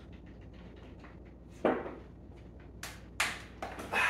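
A man gulping water from a plastic gallon jug, with faint rapid small ticks, then a sudden louder sound a little before halfway and a few sharp knocks near the end as the jug comes down.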